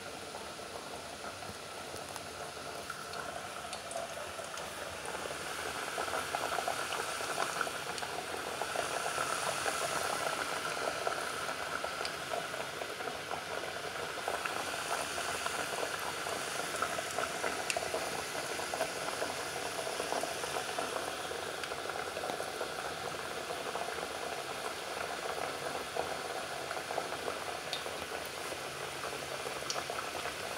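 Sliced vegetables deep-frying in a pot of hot oil: a steady sizzle with scattered small pops, mixed with the bubbling of a pot of rice boiling alongside. It grows louder after a few seconds as it is heard from closer.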